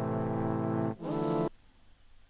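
Software synthesizer presets being auditioned: a held synth-pad chord of many steady notes cuts off just before a second in, followed by a brief half-second sound with sliding pitches, then quiet.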